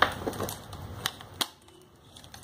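Sharp clicks and light taps from the metal frame and clasp of a handbag being handled: a loud click right at the start, then a few smaller clicks, the last about a second and a half in.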